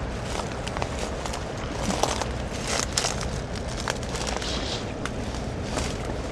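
Footsteps through dry reed stalks, crunching and crackling irregularly as the walker pushes through toward a stony bank.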